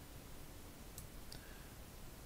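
A few faint computer mouse clicks about a second in, as the drawer-opening value is stepped up in the design software, over low room tone.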